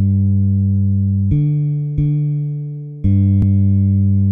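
Instrumental karaoke backing track opening with long held chords that change about a second and a third in, again at two seconds, and again at three seconds.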